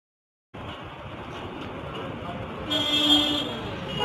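Street traffic noise that cuts in abruptly about half a second in after dead silence. A vehicle horn sounds once, briefly, about three seconds in.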